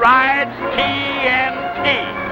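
A voice holding long pitched notes that slide up and down, with a film music track.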